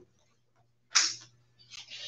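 A trading card snapped down onto a cloth playmat about a second in, one sharp slap, then a short soft rustle of cards moving on the mat near the end: a card being turned up and placed during a Vanguard trigger check.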